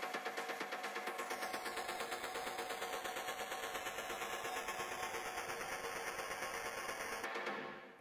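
Techno track in a breakdown from a DJ set: no heavy kick or deep bass, just a fast, steady pulsing synth with a sweeping effect that glides slowly downward. It fades away in the last second.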